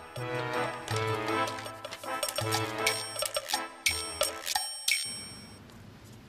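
Background music with sharply struck, pitched notes, dying away about five seconds in.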